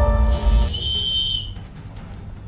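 A deep boom and whoosh cut off the music. About a second in comes one short, steady blast on a referee-style whistle: the signal that starts the timed task.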